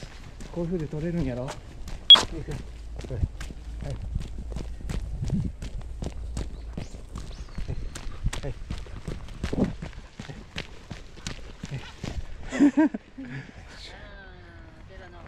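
Brisk footsteps on a paved path, a steady run of about three to four steps a second, with one sharp click about two seconds in. Short bursts of a person's voice near the start and shortly before the end.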